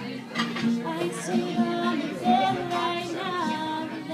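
A woman singing live with her own acoustic guitar, in long held notes.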